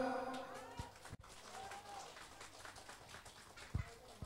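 Faint, scattered hand-clapping from a small crowd, heard as a light patter of claps. The announcer's amplified voice dies away at the start.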